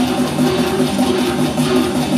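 Metal band playing live with distorted electric guitars and bass in a fast riff of repeated low notes.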